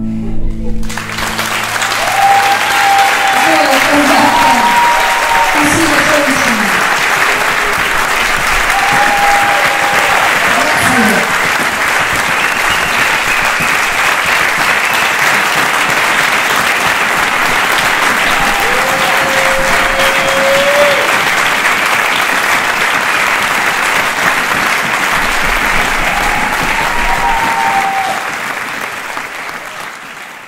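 A large audience applauding for a long stretch, with scattered shouts and whoops, fading out near the end.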